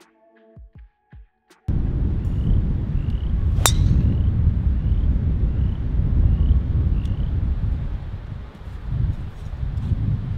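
Soft music for the first couple of seconds. It then gives way to a heavy wind rumble on an outdoor microphone, through which a single sharp crack of a driver striking a golf ball sounds about two seconds later.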